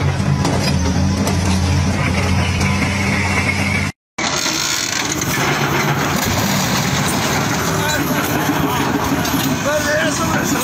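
A heavy diesel engine running steadily for about four seconds, then a sudden cut. After the cut, people talk outdoors over background noise.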